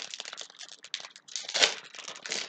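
Foil trading-card booster pack wrapper crinkling as it is handled and torn open: an uneven run of crackles, loudest about one and a half seconds in.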